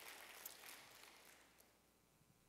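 Near silence: faint room noise that fades out about three-quarters of the way through.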